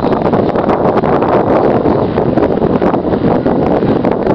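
Wind buffeting the camcorder's microphone: a loud, steady rushing.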